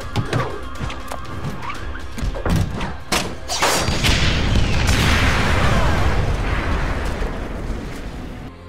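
Cartoon action sound effects over a dramatic music score: a few sharp knocks, then a big explosion about three and a half seconds in whose rumble lasts several seconds before dying away.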